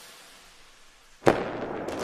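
Intro animation sound effect: a fading noise tail, then about a second in a sharp bang followed by a dense, crackling fireworks-like tail.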